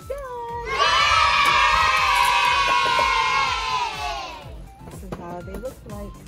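A group of children cheering together in one long shout of about four seconds that starts just under a second in, slides slowly down in pitch and trails off.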